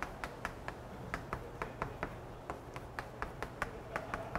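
Chalk clicking and tapping against a blackboard while equations are written: a quick, irregular run of sharp ticks, several a second.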